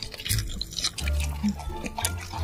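Wet, sticky mouth sounds and clicks of biting and chewing braised pork belly, over steady background music.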